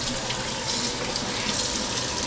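Kitchen faucet running steadily into a stainless steel sink, its stream splashing over hands being rinsed under it.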